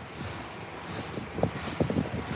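Used engine oil pouring from a Cummins ISX's oil pan into a drain funnel: a steady splashing hiss, with a few light knocks in the second half.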